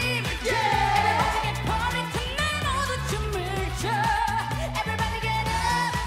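Korean pop dance song sung live by a mixed male and female vocal group into handheld microphones, over a backing track with a steady, repeating bass line.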